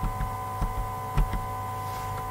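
A few light computer-mouse clicks over a steady electrical hum made of several constant tones. The sharpest click comes just past the middle.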